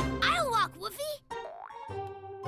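Children's cartoon soundtrack: a character's wordless vocal exclamation slides up and down in pitch over background music. Near the end comes a rising cartoon sound effect.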